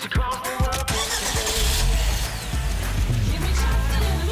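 A car engine starting and running with a steady low rumble, mixed with background music. A brief rush of noise about a second in comes just before the engine sound.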